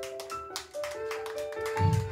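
A live rock band plays a quieter passage. Held notes step from pitch to pitch over a steady ticking beat of about four ticks a second.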